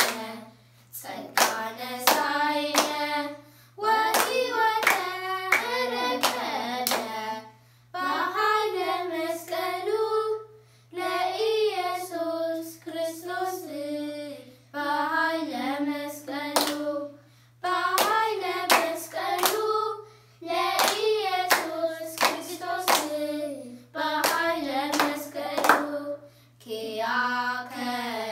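Children singing an Ethiopian Orthodox mezmur together, unaccompanied, in short phrases with brief pauses between them, with hand claps sounding in time with the singing.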